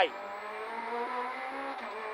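Peugeot 208 R2B rally car's 1.6-litre four-cylinder engine, heard from inside the cabin while the car is driven under power. Its pitch rises slowly, then drops briefly near the end.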